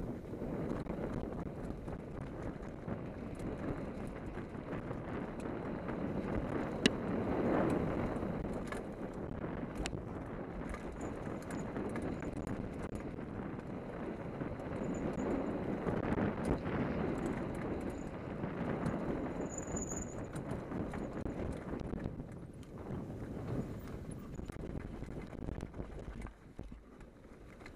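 Hardtail mountain bike descending a dirt and leaf-covered forest trail at speed: the tyres roll and scrub over the ground while the bike clatters with many quick knocks and rattles over the bumps.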